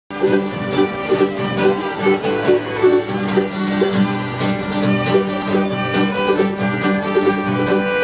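Live acoustic string band playing a tune, with several fiddles carrying the melody over strummed acoustic guitar.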